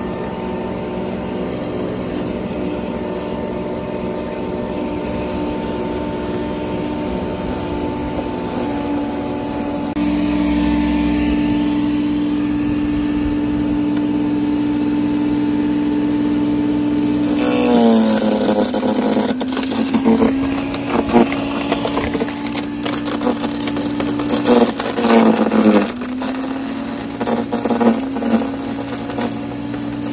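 Sun Joe 15-amp electric chipper-shredder running with a steady motor whine as straw and manure are fed through. About two-thirds of the way in, a stick goes into the hopper: the motor bogs down in pitch under the load and slowly recovers, while the blades chew the wood with a run of cracking and snapping.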